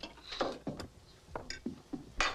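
Cutlery and dishes clinking and knocking on a table during a meal: a handful of short, separate clicks and taps.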